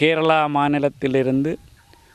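Speech only: a man talking in Tamil, two drawn-out phrases followed by a short pause.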